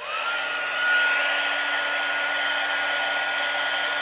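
Embossing heat tool switched on, its fan motor spinning up in the first moment and then running steadily: an even blowing hiss with a thin, steady high whine.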